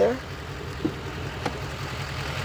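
The 6.6-litre Duramax LML V8 turbodiesel of a 2015 GMC Sierra 2500 idling steadily with a low, even rumble. Two short faint clicks come about a second in and again half a second later.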